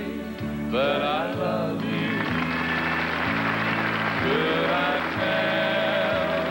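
Male country vocal quartet singing close harmony over sustained chords, with bass, baritone, lead and tenor voices in short held phrases.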